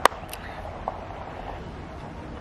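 One sharp click right at the start, followed by a fainter click and a tiny tick about a second in, over a steady outdoor background hiss.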